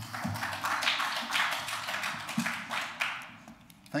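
A brief round of applause from the members in the chamber, a dense patter of claps or desk-raps that dies away about three and a half seconds in.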